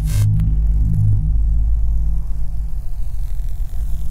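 Dark, droning podcast intro music: a deep, steady bass hum with a few held low tones in the first second, and a short hiss that cuts off just after the start.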